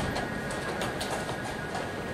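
Chess tournament hall ambience: a steady background murmur with scattered sharp clicks of wooden pieces being set down and chess clocks being pressed at the boards, over a faint steady high tone.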